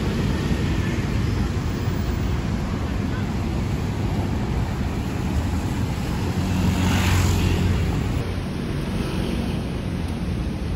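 City street traffic noise: a steady low rumble of passing cars, with one vehicle passing louder about seven seconds in.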